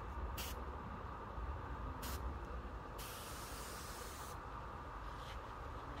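Air spray gun hissing as it sprays coating: two brief trigger pulls, then a longer spray of about a second and a half about three seconds in, and a faint short one near the end. The gun is fed from a compressor at about 40 psi, which proves too low.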